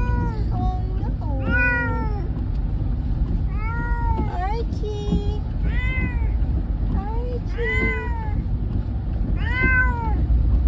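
Orange tabby cat meowing from inside a pet carrier: about six drawn-out meows, roughly two seconds apart, each rising then falling in pitch. The calls are his protest at being shut in the carrier.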